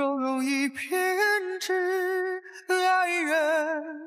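Background song: a woman singing a slow line in long held notes with vibrato.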